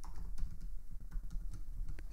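Computer keyboard keys tapped in a quick run of light clicks, typing out a short password.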